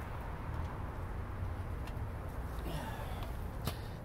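Steady low outdoor rumble, with a couple of faint clicks.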